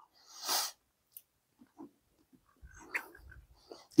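A man's short, sharp breath or sniff about half a second in, then faint mouth clicks and a soft intake of breath shortly before he speaks again.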